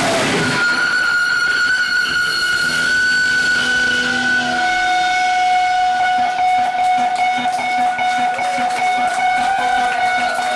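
Loud, steady high-pitched ringing tones from electric guitar amplifier feedback, held for several seconds after the full band cuts out just after the start. A second, lower tone joins about four seconds in, with faint scattered clicks behind it.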